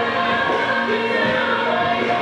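Loud song with sung vocals holding long notes over a full band mix, the music for a stage dance performance.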